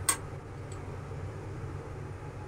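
A single sharp click just after the start, then the steady low hum of a lit gas stove burner.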